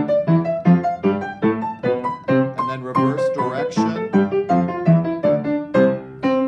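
Piano playing an octave exercise on the white keys: the left hand strikes block octaves while the right hand alternates between the two notes of each octave, stepping from one hand position to the next at about three notes a second.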